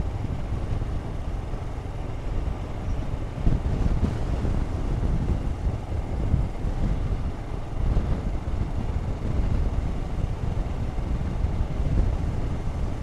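Royal Enfield Himalayan's single-cylinder engine running at road speed while riding, a steady low rumble mixed with wind noise on the microphone.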